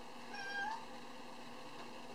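A cat meowing once, a short call of about half a second that rises slightly in pitch at the end, over a faint steady room hiss.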